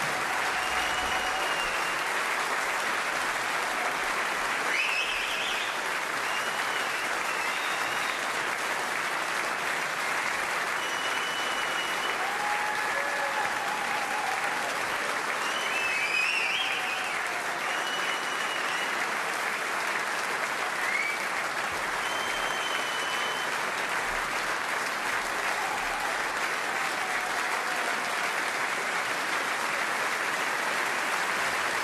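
Sustained applause from a large concert-hall audience, a dense even clapping with a few short high whistles cutting through now and then.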